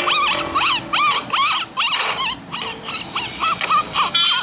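A cartoon puppy yipping: a quick run of short, high yaps, about three a second, each bending up and down in pitch, over background music.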